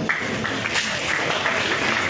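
Audience applauding, breaking out abruptly.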